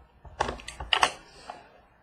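Small cardboard trading-card box being handled and its lid pulled off: a quick run of light clicks and taps over the first second and a half, the sharpest about a second in.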